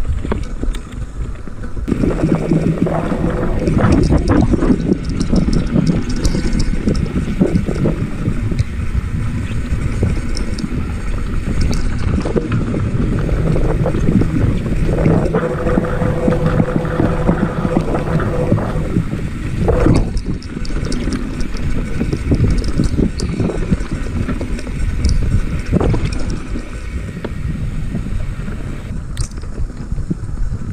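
Mountain bike rolling fast over a rocky dirt singletrack: continuous tyre rumble with the bike rattling and clattering over rocks and roots, and wind buffeting the microphone. It gets louder about two seconds in.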